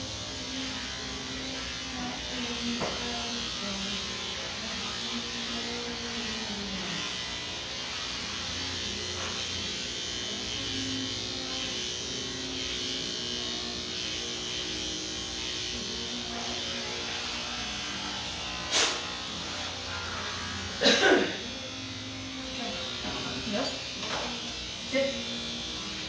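Electric dog-grooming clippers running with a steady buzz as they cut a dog's coat, under faint background voices. Two sharp knocks stand out a few seconds before the end.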